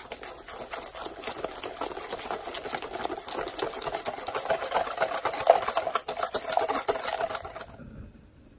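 Wire balloon whisk beating a wet flour batter in a glass bowl: fast, continuous strokes with wires clicking against the glass and the batter sloshing. It stops abruptly just before the end.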